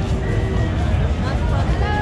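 Crowd chatter and passing voices over loud bar music with a steady heavy bass.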